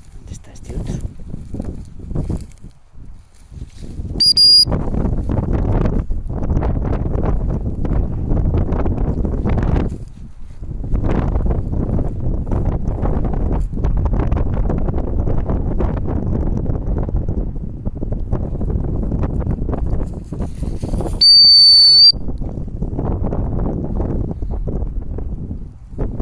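A dog training whistle blown twice on one steady high note: a short blast about four seconds in, and a longer, louder blast of about a second near the end. Between the blasts, low rumbling wind noise on the microphone.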